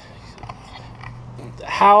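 A low, steady background hum in a pause between speech, fading out about a second and a half in; a man starts speaking near the end.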